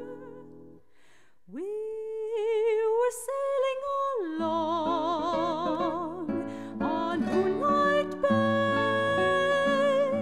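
Soprano singing with wide vibrato over a plucked guitar. A held note fades out within the first second; after a short pause the voice swoops up into a new phrase, and the guitar's bass notes come back in about four seconds in.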